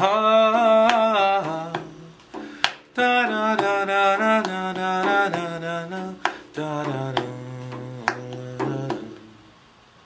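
A man's solo voice singing a slow devotional song without accompaniment, in long ornamented phrases that slide between notes. After a short breath about two seconds in, a second phrase ends on low held notes that fade out about nine seconds in.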